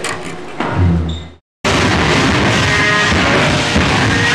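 A low bass guitar note rings for under a second and dies away. Then a metal band comes in suddenly, playing live and loud with drums, bass and guitars.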